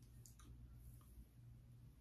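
Near silence: low room hum with a few faint clicks.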